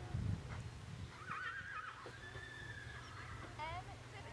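A horse whinnies once, about a second in: a wavering call lasting about a second.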